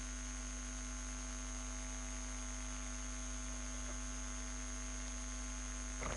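Steady electrical mains hum with an even hiss and a few thin steady tones, unchanging throughout.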